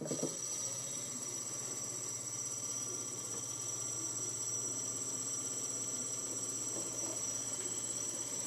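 RC propeller spun by an electric motor on a thrust test rig, running steadily with a high-pitched whine over a low hum.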